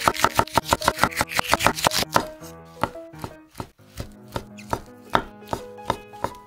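Chef's knife chopping green peppers on a wooden cutting board: quick, even strokes, about six a second, for the first two seconds, then slower, more widely spaced cuts.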